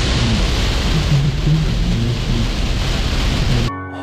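Heavy rain pouring on a car's windshield and roof, heard from inside the cabin as a loud, dense hiss that cuts off abruptly near the end.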